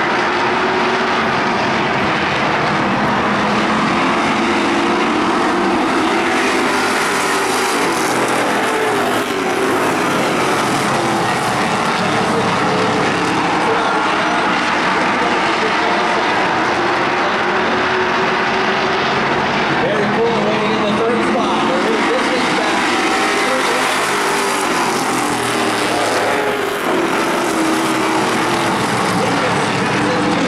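Oval-track stock cars racing at speed, their engines running loud and steady, with engine pitch rising and falling as cars come past, most clearly around 8 s, 21 s and 26 s in.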